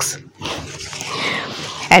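Rustling of clothing fabric and plastic packaging as garments are handled and moved on a table, a soft continuous rustle lasting about a second and a half.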